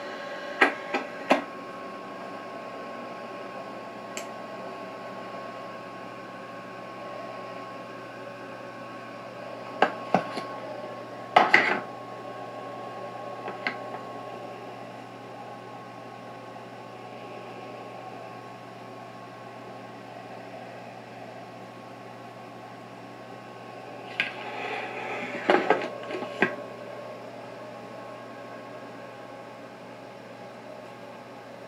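Sharp clicks and knocks of hard gear being handled, in small clusters near the start, around ten to twelve seconds in, and again near the end, over a steady hum with a thin high tone.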